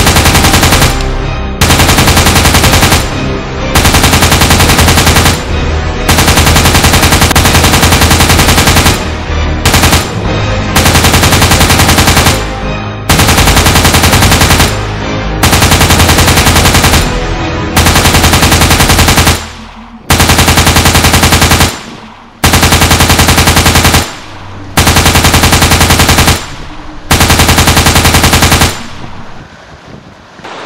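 Automatic rifle fire in about a dozen long bursts of rapid shots, each lasting one to three seconds with brief pauses between, stopping shortly before the end. The sound is very loud and distorted.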